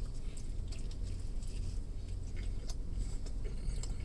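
A person biting into and chewing a carne asada taco in corn tortillas, faint scattered wet mouth clicks over a low steady hum inside a car.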